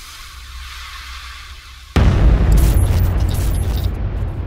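Logo-animation sound effect: a hiss over a low rumble for about two seconds, then a sudden loud cinematic boom that slowly fades, with crackling glitch sounds over it.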